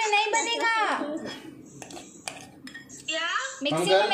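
A high-pitched voice sounds twice, in the first second and again near the end, its pitch falling. In between come a few light clicks of a metal spoon against a glass bowl of whipped dalgona coffee.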